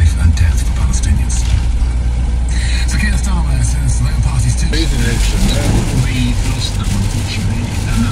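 Steady low drone of a van's engine and tyres on a wet road, heard inside the cab while driving, with a voice faintly over it in the middle.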